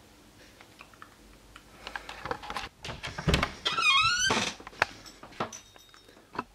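A door being opened: knocks and thuds, with a wavering high creak in the middle, then a few light clicks.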